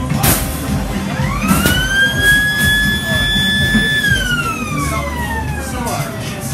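A siren wailing: one tone rises over about a second, holds steady, then slowly falls away, over fairground music. A brief hiss comes just after the start.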